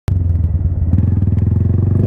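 Honda Grom's 125 cc single-cylinder four-stroke engine running at a steady pitch while the motorcycle is ridden at an even speed.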